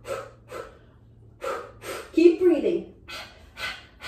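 A woman's voice giving short, rhythmic exercise cues and effortful breaths, about two a second, with one longer voiced sound a little past the middle.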